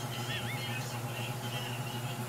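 Steady low background hum, like a small motor or appliance running, with a few faint high chirp-like tones about half a second in.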